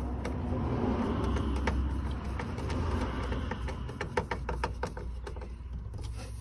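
Rustling and handling noise, then a run of small irregular clicks in the second half, as a black plastic door handle trim is pressed and worked into place on a hessian-covered van door card. A low steady hum runs underneath.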